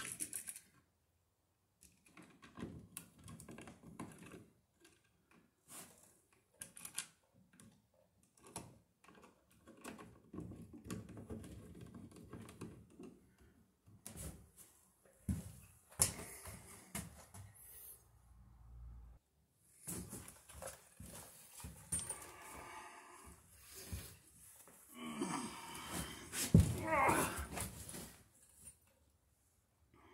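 Scattered clicks, taps and rustles of stiff electrical cable being folded into a plastic box and a wall receptacle being pushed in and fitted, in a small room. A louder sound with a rising pitch comes near the end.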